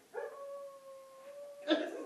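One long, steady howl-like call, held for about a second and a half at an even pitch. A short, loud burst of noise follows near the end.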